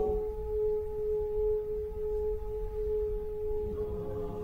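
Mixed choir singing, holding one long steady note, with more voices joining in a fuller chord near the end.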